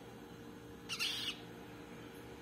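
A downy gallinule chick gives one short, high-pitched peep about a second in, over a faint steady hum.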